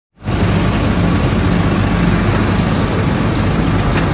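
City bus engine idling steadily, heard from inside the bus: a low even hum under a broad noisy wash.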